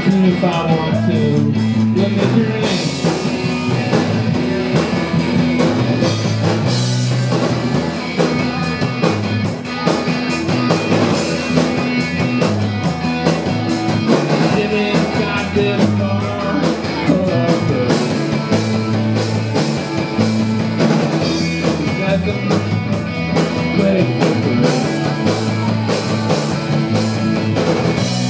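Live rock band playing an instrumental passage: electric guitar and bass over a drum kit with a steady beat.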